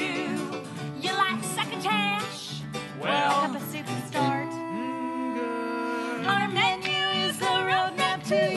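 Two women singing a country-style show tune in lead and harmony over a small string band. The voices hold a sustained chord about halfway through, then move back into the faster melody.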